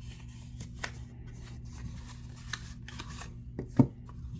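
Cardboard card box being handled and opened: paperboard scraping and rubbing with scattered light ticks and taps as the card decks are slid out and set down.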